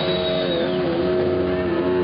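Live rock band holding a loud, sustained distorted chord, with a few of the held notes bending down in pitch and back.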